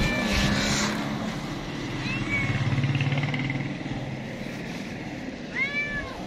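Tortoiseshell-tabby cat meowing: short calls near the start and about two seconds in, then a louder, arched meow near the end.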